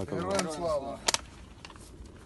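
A man's voice speaking for about the first second, then a short, sharp double click just after a second in, followed by faint background.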